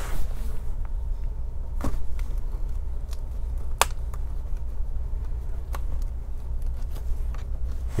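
Metal pry tool working a plastic laptop screen bezel loose from its adhesive tape: three sharp clicks about two seconds apart over a steady low hum.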